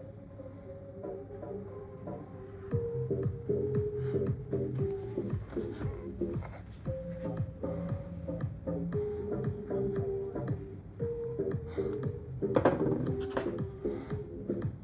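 Karaoke backing track of a pop song with a steady beat, played from a TV over Bluetooth through the ALATS GHD-200 portable karaoke speaker. It gets louder a few seconds in.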